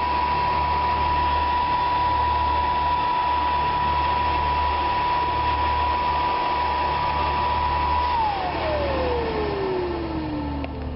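Miniature wind tunnel's fan running steadily with a high whine; about eight seconds in, the whine glides down in pitch as the fan spins down.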